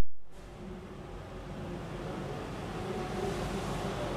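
Marker pen drawing a long curved line on a whiteboard, heard as a soft, even rubbing over steady background noise.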